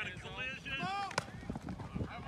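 Players shouting short, high calls during a 7-on-7 football pass play, with one sharp smack a little past a second in.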